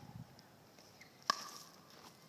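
A tennis racket striking a ball once, about a second in: a single sharp pock with a short ring from the strings.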